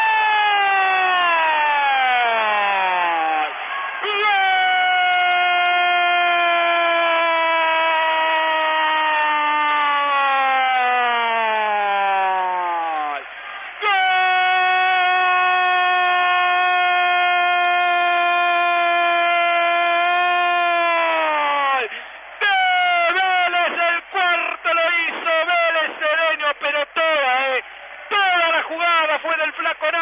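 A football radio commentator's drawn-out goal cry, "gol", held in three long loud shouts that each slide down in pitch as they run out, greeting a goal. In the last several seconds it breaks into fast, excited speech.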